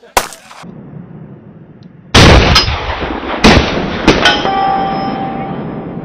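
Barrett M82A1 .50 BMG rifle firing: a very loud shot about two seconds in with a long rolling tail, followed by more sharp cracks over the next two seconds. A metallic ringing then fades out. A shorter sharp crack comes just after the start.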